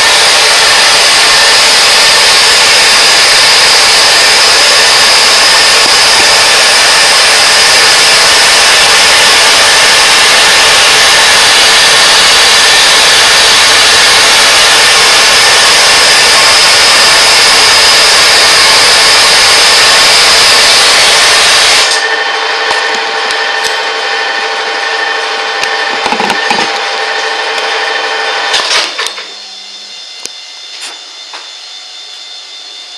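CastoDyn oxy-acetylene powder flame-spray gun running: a loud, steady hiss of the flame and powder jet while it metal-sprays the hard top coat onto a turning WSK125 crankshaft journal. It shuts off suddenly about 22 seconds in, leaving a quieter steady hum with a few knocks.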